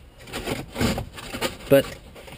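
Cardboard pizza box scraping and rubbing against the inside of a velomobile's shell as it is pushed into a tight gap behind the seat, in a few short scrapes.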